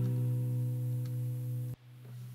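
Acoustic guitar chord left ringing with no singing, slowly fading, then cut off suddenly near the end.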